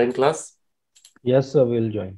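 Speech: a voice talking, broken about a second in by a short pause that holds a few faint clicks.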